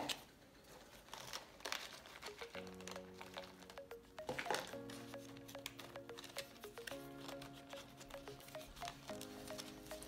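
Faint background music of soft held chords that come in a few seconds in and change every couple of seconds, over light crinkling and clicking as orchid potting bark is pressed by hand into a clear plastic pot.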